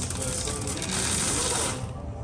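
Candy-coated chocolates pouring from a gravity bin dispenser into a plastic bag: a dense rattle of tiny clicks that cuts off shortly before the end as the flow stops.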